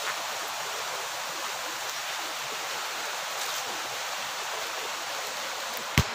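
Steady rush of a fast-flowing stream, an even hiss without breaks; a brief knock right at the end.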